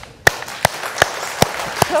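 Studio audience applauding, with loud, evenly spaced claps from one close clapper standing out at about two or three a second over the crowd's clapping.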